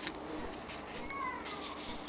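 Rustling of fabric handled by hand, with one short pitched call that slides downward about a second in.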